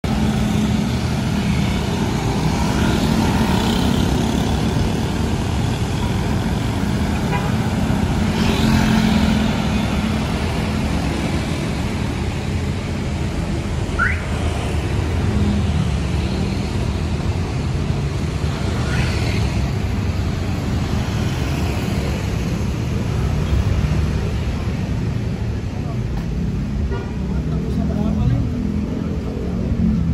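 Busy city street traffic, mostly motorbikes and cars passing steadily, with vehicles swelling past a couple of times and a short, high rising whistle about halfway through.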